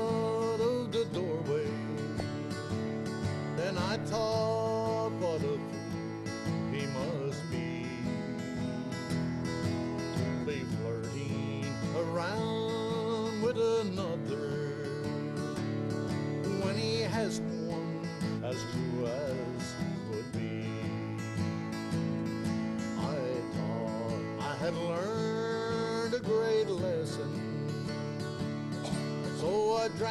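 Acoustic guitar strummed in a country song, with a melody line of sliding, wavering notes over the chords during an instrumental break between sung verses.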